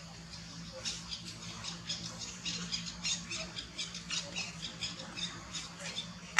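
A rapid series of short, high animal chirps or squeaks, several a second, starting about a second in and running until near the end.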